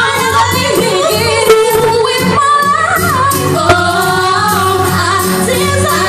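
Live pop song: female voices singing a sustained, gliding melody into handheld microphones over a pop accompaniment.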